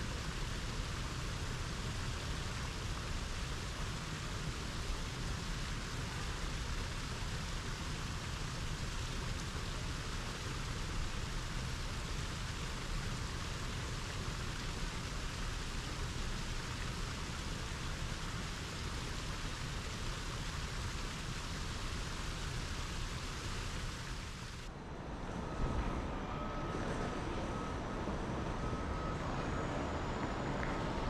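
Artificial rock waterfall splashing steadily into a shallow pool. About 25 seconds in it cuts to curbside traffic ambience: a low vehicle rumble with a thin steady high tone.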